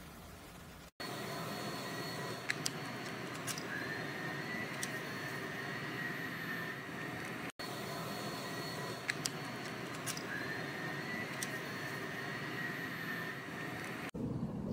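A steady whirring noise with a faint high whine and a few light ticks. The same few seconds play twice over.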